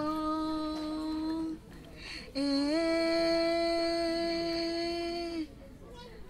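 A woman's unaccompanied voice holding two long sung notes: the first fades out about a second and a half in, and the second comes in about two and a half seconds in with a small upward step and is held steady for about three seconds.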